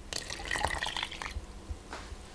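Dissolved yeast and warm water poured from a small bowl into flour in a glass mixing bowl, a liquid pour that fades out about a second and a half in.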